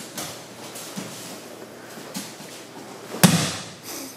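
An aikido partner's breakfall onto a padded tatami-style mat: one loud thud about three seconds in as the body lands, after a few faint knocks and shuffles of bare feet and cotton uniforms.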